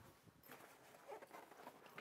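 Near silence: faint soft footsteps on carpet and a light rustle as a man reaches into a bag.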